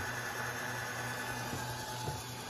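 Steady hiss of MAPP gas torches burning on a homemade brass annealing machine, over a low, even hum from the machine's electric drive motor.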